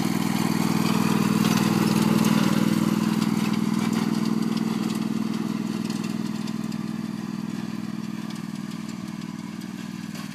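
Riding lawn mower's small engine running at a steady speed, loudest about two seconds in while the mower is close, then growing steadily fainter as it drives away.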